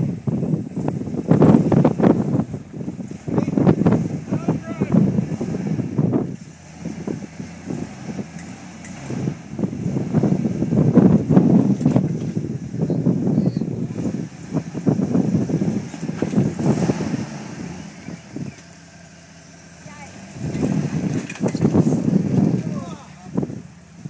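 Jeep Wrangler engine revving in repeated bursts as it crawls over rock around a boulder, with a quieter lull near the end before it picks up again.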